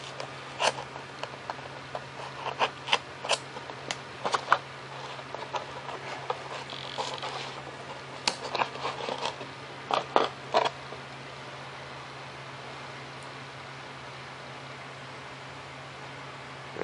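Small clicks and scrapes of a plastic control horn and hands working against a painted foam-board aileron as the horn is fitted. They come scattered through the first ten seconds or so, then stop, leaving only a faint steady hum.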